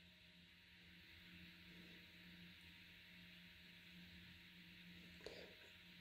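Near silence: room tone with a faint steady hum, and one faint tick about five seconds in.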